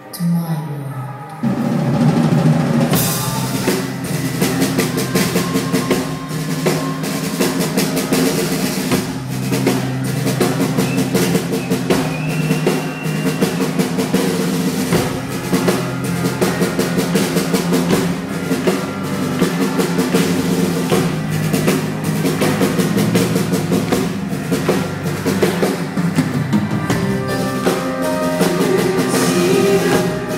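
Live metal band playing at full volume, driven by heavy drum-kit playing with bass drum and snare. The band comes in suddenly about a second and a half in, after a quieter opening.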